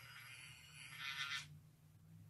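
Curl Secret automatic hair curler's small motor whirring as the closed chamber draws a strand of hair in. It is a steady high whir that stops suddenly about one and a half seconds in.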